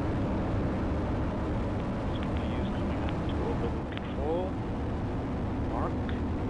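Atlas V rocket's RD-180 kerosene–liquid-oxygen main engine at full thrust during liftoff and early climb: a steady, deep rumble with no break.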